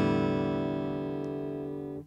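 Acoustic guitar chord from a single downstroke strum, ringing and slowly fading, then damped short at the end.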